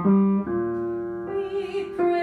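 Piano playing a slow line of single notes, two struck about half a second apart and then a long held note, as rehearsal accompaniment for a choral part. A singing voice comes in softly about a second and a half in.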